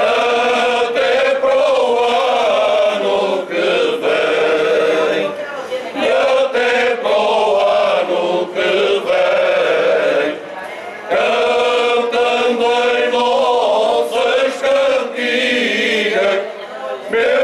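Cante alentejano: a male choir singing unaccompanied in slow, long-held phrases, with short pauses for breath about five and eleven seconds in.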